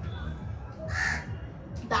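A crow caws once, about a second in, over a low steady background hum.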